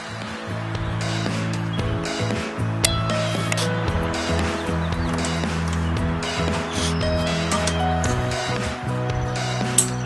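Background music with held chords and a bass line that moves in steps.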